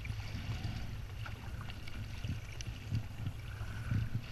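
Kayak paddle strokes, with sea water splashing and lapping against the hull of a sit-on-top kayak, over a steady low rumble.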